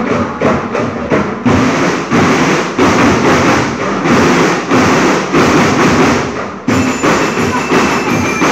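A school marching band playing, led by drums beating a fast, steady rhythm. Near the end high ringing notes join in.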